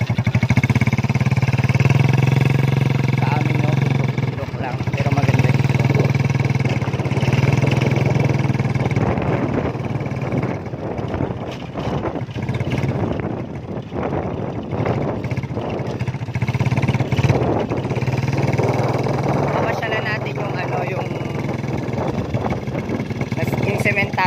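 Small motorcycle engine running steadily while riding, its low hum swelling and easing slightly with the throttle.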